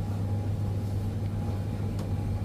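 Steady low mechanical hum with a faint high tone running over it, from the fans and refrigeration of an open supermarket chiller case.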